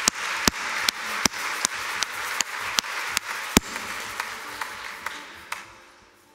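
A congregation applauding, a dense patter of clapping that thins out and fades away over the last couple of seconds.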